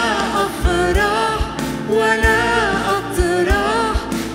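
Live worship band playing an Arabic worship song: singers carrying the melody over keyboard, acoustic and electric guitars, and drum-kit beats.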